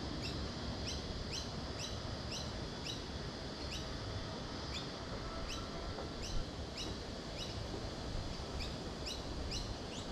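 Birds calling: a steady run of short, rising chirps, about two a second, over low, steady outdoor background noise.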